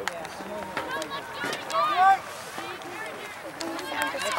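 Voices calling out around a girls' soccer game, too distant or brief for words to be made out, with one loud, high shout about two seconds in.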